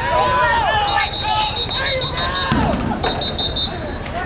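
Referee's whistle blowing the play dead: one long blast, then a second, warbling blast, over voices of spectators in the stands. A sharp thump about two and a half seconds in.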